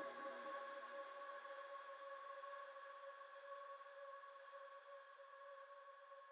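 Faint fading tail of a synthesizer loop after playback stops: a few quiet steady tones ring on and die away into near silence.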